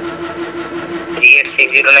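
Telephone-call audio played over a speaker: a steady hum on the line. About a second in, it is broken by short crackling bursts as a voice starts again.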